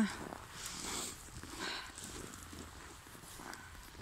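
Footsteps crunching in snow at a walking pace, soft and irregular.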